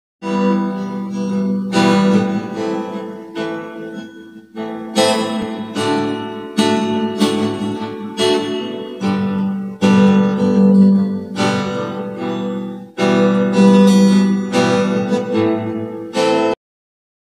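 Acoustic guitar playing an instrumental intro: chords struck every one to two seconds and left to ring.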